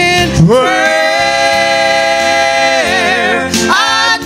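A man and two women singing a gospel song into handheld microphones. The voices glide up into one long held note about half a second in, which wavers near the end before the next phrase starts.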